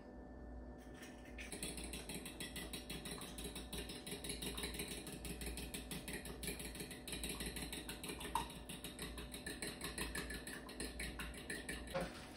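Eggs being beaten in a bowl with a fork: a fast, even run of light clicks of metal on the bowl, starting about a second in, over a steady low hum.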